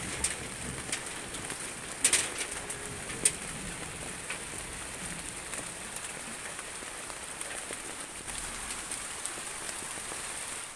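Steady rain falling on leaves and ground, an even hiss, with a few louder close drips, the loudest about two seconds in and another about three seconds in.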